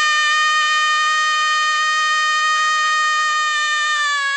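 One long call held on a single steady high note with strong overtones, its pitch starting to sag near the end.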